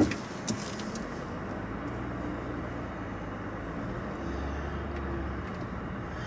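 A vehicle's engine and road noise heard from inside the cabin while driving slowly: a steady low hum whose pitch shifts a couple of times.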